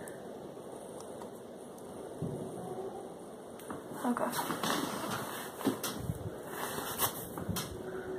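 Handling noise from a phone camera being moved and repositioned: a steady hiss for the first few seconds, then rustling and several light knocks from about halfway on.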